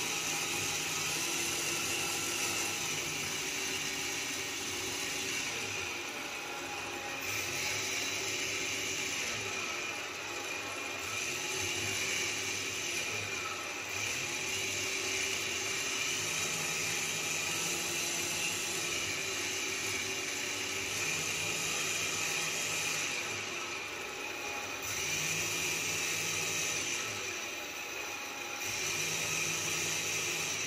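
Small electric centrifugal blower of a prototype low-cost ventilator running, pushing air through a hose into a rubber glove used as a test lung. The sound is continuous, and its pitch and level shift every few seconds as the blower cycles.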